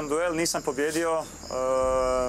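Crickets trilling steadily, with short chirps repeating every half second or so, under a man's voice that speaks and then draws one word out long near the end.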